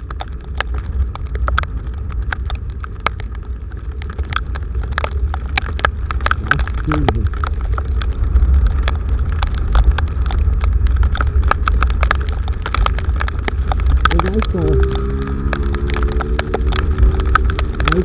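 Heavy rain hitting a motorcycle-mounted camera while riding, heard as a dense run of sharp drop ticks over a constant deep wind rumble. Near the end a pitched tone rises and then holds steady.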